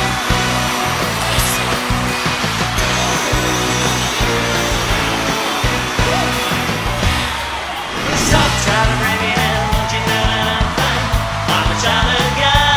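Instrumental intro of a song, music with a steady beat.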